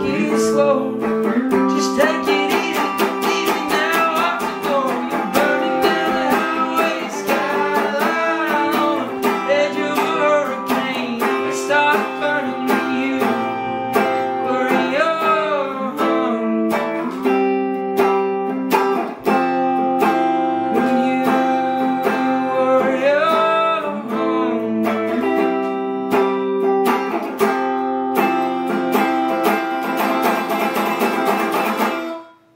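Hollow-body electric guitar with a Bigsby vibrato tailpiece being played: a steady run of picked notes and chords, some of them sliding in pitch.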